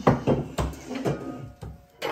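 A few dull knocks and scrapes as a knife and fork cut through a thick grilled steak and tap the ceramic baking dish beneath it, the sharpest near the start.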